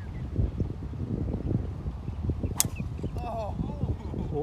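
Golf driver striking a ball off the tee: one sharp crack about two and a half seconds in, over steady wind rumble on the microphone. Voices call out right after the shot.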